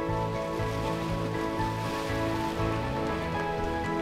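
Background music with a pulsing bass line that steps to a new note about every half second, over a rushing hiss of water spray.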